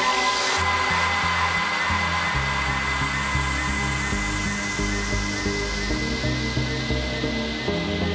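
Electronic dance music from a DJ set: a loud white-noise sweep fades and falls away from the top end, a held high tone runs above it, and a line of bass notes comes in underneath.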